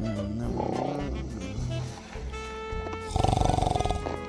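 A loud, rasping snore from a sleeping person begins about three seconds in, over background music with held notes.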